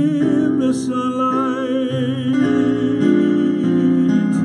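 A man singing a jazz standard with a wide vibrato on held notes, accompanying himself on piano with sustained chords.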